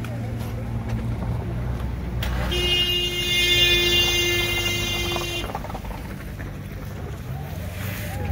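A vehicle horn sounds one long, steady blast of about three seconds, starting about two and a half seconds in. Under it runs the low rumble of a vehicle engine.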